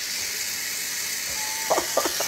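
Steady high-pitched whirring hiss of a Rotoq360 wind-up rotisserie's mechanism running just after its release tab is pulled, turning the spit.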